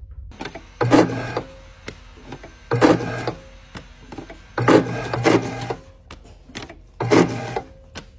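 Electric paper punch cycling four times, about two seconds apart, each stroke a short motor run of about half a second as it punches holes through a stack of kraft paper covers for binding.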